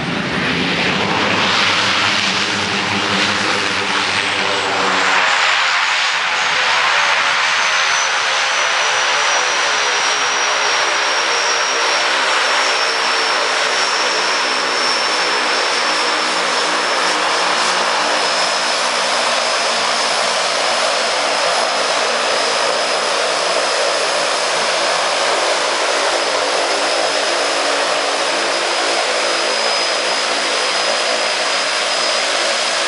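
De Havilland Canada DHC-6 Twin Otter's twin PT6A turboprop engines and propellers as the plane lands and taxis up close, louder for the first few seconds after touchdown. A high turbine whine runs over the propeller drone and slowly drops in pitch.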